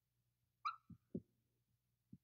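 Near silence, with one faint short high-pitched blip about two-thirds of a second in and two soft low thuds just after.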